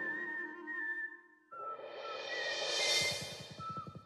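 Cartoon title music trailing off, then a whistled tune starting about a second and a half in, over soft background music.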